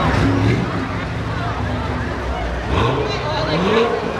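Chatter of a street crowd: many voices talking at once over a steady low rumble.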